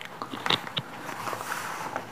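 Paper and a book being handled, a few light crackles and clicks as the pages are moved.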